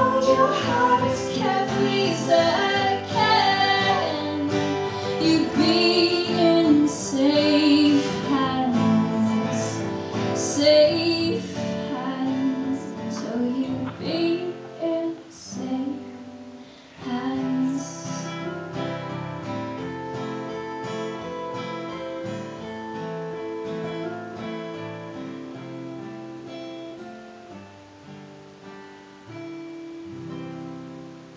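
Live acoustic duo of two acoustic guitars, strummed and picked, with a woman singing over them. The voice drops out about halfway through, and the guitars play on alone, growing gradually quieter toward the close of the song.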